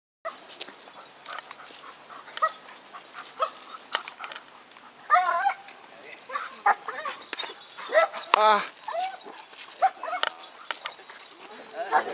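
Dog whining and yipping in short, high cries that bend in pitch, with scattered light clicks.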